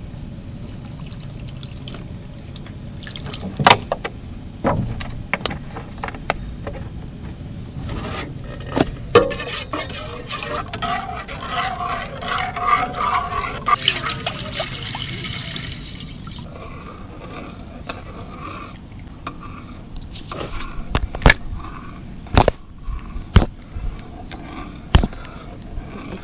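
Water poured from a plastic bottle into a metal cooking pot, a rushing fill for a few seconds around the middle. Sharp knocks and clatters of gear being handled in an aluminium canoe come before and after it, several in quick succession near the end.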